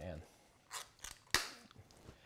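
Three or four short, sharp clicks and light scrapes from an opened metal sprat tin being handled over a stainless steel mixing bowl as the fish are picked out.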